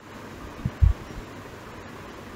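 Steady hiss with two dull, low bumps just under a second in and a fainter one after: handling knocks picked up by the microphone.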